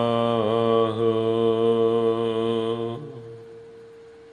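Gurbani kirtan: a sung note with a slightly wavering pitch, held over a steady harmonium drone, closing the shabad. The voice stops about three seconds in, leaving a single harmonium tone that fades away.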